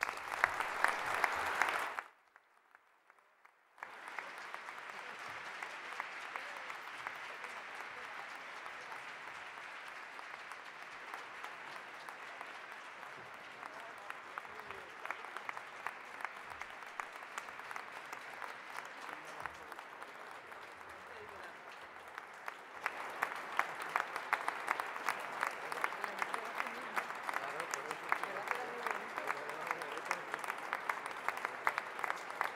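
Audience applauding. The clapping is loud at first, breaks off for about two seconds, then resumes more softly and grows louder again about three-quarters of the way through.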